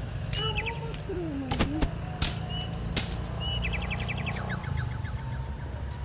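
Bush ambience: a bird repeats a short high chirp and rapid ticking trills over a steady low rumble. A few sharp snaps or clicks come at about one and a half to three seconds.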